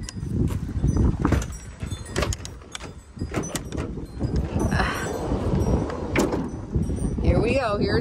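Wind buffeting the microphone throughout, with clicks and a noisy slide about five seconds in as the sliding side door of a Ford Transit cargo van is unlatched and rolled open.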